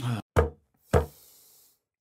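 Knocks on a hard surface: a weaker one at the start, then two loud ones about half a second apart.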